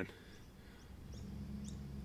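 Faint outdoor background with a few short, rising bird chirps and a low steady hum that grows slightly about halfway through.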